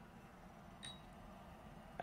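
Near silence: room tone, with one faint light click about a second in.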